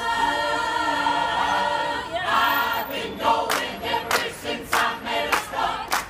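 Mixed choir of men's and women's voices singing unaccompanied, holding one long chord for about two seconds before the melody moves on. From about three and a half seconds in, the singers clap on the beat, a little under two claps a second.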